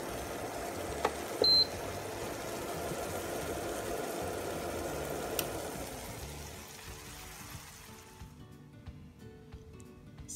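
A pan of noodles in tomato and sardine sauce simmering with a steady sizzle that fades out about seven seconds in, with a short high beep about one and a half seconds in.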